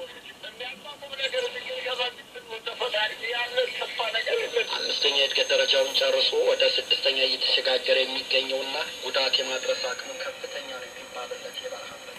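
Shortwave radio broadcast of speech in a foreign language, played through the loudspeaker of a homemade shortwave receiver. The voice sounds thin, with no bass, and a faint steady high whistle lies over it in the middle.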